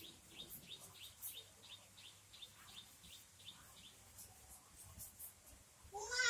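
Near silence: faint chalk strokes on a blackboard, with a regular run of faint short high chirps, about four a second, over the first three seconds or so.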